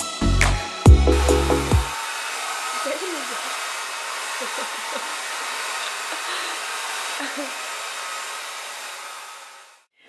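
A short intro jingle with a few loud, deep bass notes in the first two seconds. Then a steady rushing noise follows, with faint voices under it, and it fades out just before the end.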